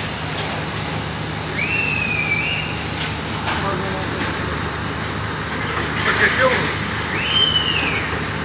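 Steady engine hum and street noise, with faint distant voices and two brief high squeals, one about two seconds in and one near the end.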